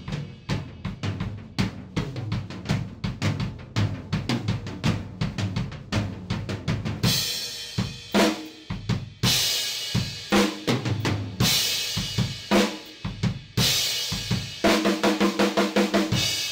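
Acoustic drum kit played alone in a studio take: fast, dense strokes on the drums for the first several seconds, then crash cymbals struck every second or two over the beat from about seven seconds in, and a quick run of tom hits near the end.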